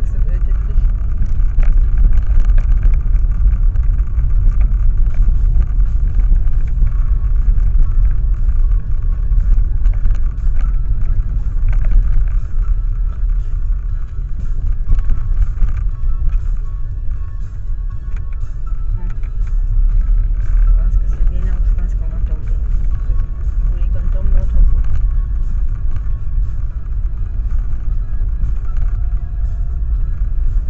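Car cabin noise recorded from inside the car: a steady low rumble of engine and tyres on the road.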